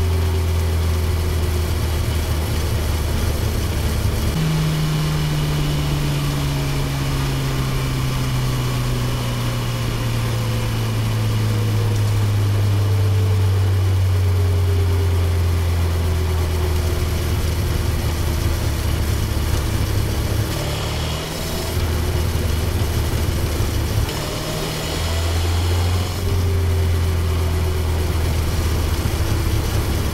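Honda CB1000R's inline-four engine on the move as the bike slows off the expressway. Its note steps up in pitch about four seconds in and then falls slowly as the bike decelerates. Near the end there are further changes and short dips in the note.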